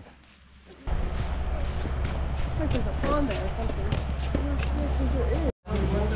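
Several people chatting at once in a sugar shack over a steady low machinery hum. The sound comes in suddenly after a quiet first second and drops out briefly near the end.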